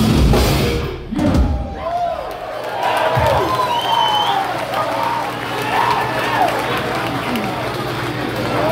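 A live hardcore punk band playing loud with drums and distorted guitars stops abruptly about a second in at the end of a song. Then the audience cheers and shouts over a steady low hum.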